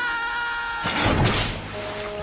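Cartoon score holding a sustained chord, which gives way about a second in to a loud rushing splash of water as a shark surges up from the sea.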